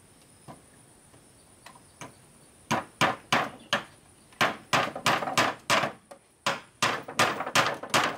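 Hammer striking wooden boards: a few light taps, then from about three seconds in a run of sharp blows, two to three a second, with a brief pause near six seconds.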